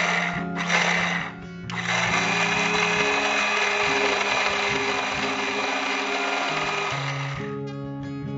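Electric mixer grinder with a steel jar grinding soaked lentils and water into batter: two short pulses in the first second and a half, then running continuously for about six seconds before switching off.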